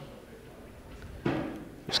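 Quiet room tone in a hall, broken by a short voice sound a little after a second in, with commentary speech starting at the very end.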